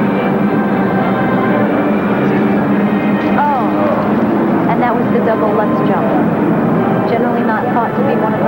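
Figure-skating program music in an arena. About three seconds in, crowd noise with rising calls and shouts takes over from it.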